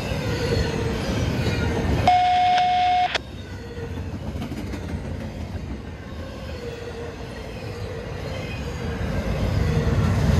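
Double-stack intermodal freight cars rolling past with a steady rumble of steel wheels on rail. About two seconds in, a single loud, steady high-pitched squeal sounds for about a second and cuts off suddenly, typical of a wheel flange squealing against the rail.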